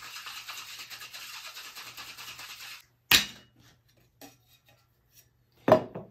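Liquid sloshing in a metal two-tin cocktail shaker during a dry shake of raw egg, cream, syrup and rum without ice; the shaking stops a little under three seconds in. Two sharp metallic knocks follow, one about three seconds in and one near the end, as the tins are broken apart and set down on the bar.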